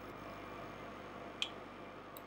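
Faint room tone with one light click about a second and a half in, from the computer being worked.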